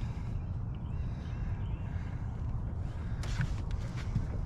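Steady low outdoor rumble with a few faint bird chirps in the first half, and a brief clatter of clicks about three seconds in.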